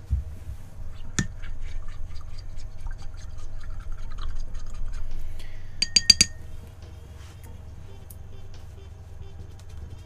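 Paintbrushes being rinsed in a glass jar of water: splashing and small knocks for several seconds, then a quick run of three sharp glassy clinks about six seconds in.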